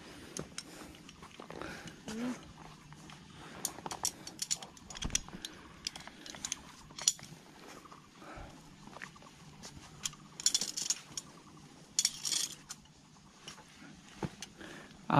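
Light metallic clinks and clicks of climbing carabiners and harness hardware as hikers move along a fixed rope and safety cable, in scattered bursts with a couple of brief clusters near the end.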